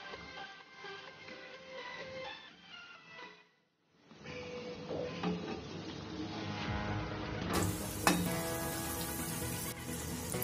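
Litti frying in hot oil in a kadhai, a steady sizzle, under background music with held tones. A couple of light clicks come later as the litti are turned with a slotted spoon, and the sound cuts out completely for about half a second around three and a half seconds in.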